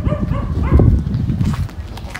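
A dog barking in a few short calls over a low rumble.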